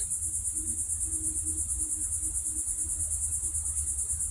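Insects calling steadily, a high, fast-pulsing trill, over a low steady hum.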